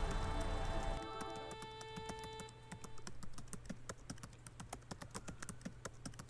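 Quick, uneven clicking of fingers typing on a laptop keyboard, starting about two and a half seconds in. Held music tones fade out in the first three seconds.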